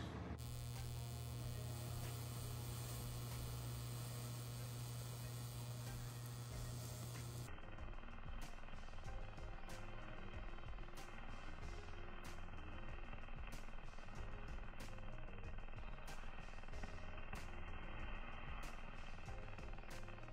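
High-frequency Tesla candle running, its plasma flame giving a steady, fairly quiet electrical hum and buzz. The sound changes about seven and a half seconds in, the low hum giving way to a thinner buzz with faint crackles.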